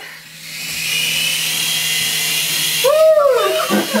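Small quadcopter drone's electric motors and propellers spinning up and whirring steadily in flight, a high buzzing whine. About three seconds in, a person lets out a short rising-and-falling whoop over it.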